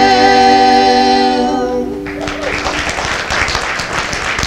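Three-part cowboy vocal harmony with acoustic guitars holding the song's final chord, which fades out about two seconds in. Audience applause starts as the chord ends.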